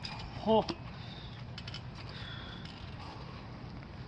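Faint creaks and clicks from a backyard trampoline's coil springs as wrestlers shift their weight on the mat, over a quiet outdoor background.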